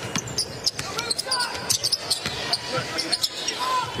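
Basketball dribbled on a hardwood court in an arena, with shoe squeaks and scattered voices from players and crowd.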